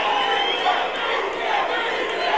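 A large audience cheering and shouting, many voices at once at a steady level.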